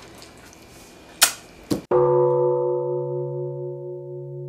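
Two sharp knocks in the first half, then about halfway through a gong-like chime sound effect strikes and rings on as several steady tones, slowly fading.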